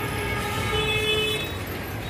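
Street traffic noise with a vehicle horn sounding one steady note for about a second, starting about half a second in.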